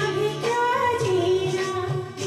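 Woman singing a Hindi song into a handheld microphone over instrumental accompaniment, holding a long note that bends up and down.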